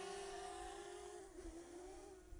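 Faint, steady whine of a DJI Mavic Mini's brushless-motor propellers as the small drone flies sideways at sport-mode speed. The pitch dips briefly about a second and a half in.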